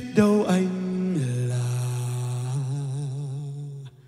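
A male vocalist singing a low held note. It starts suddenly, slides down about a second in, and is then sustained with a slow vibrato before cutting off abruptly near the end.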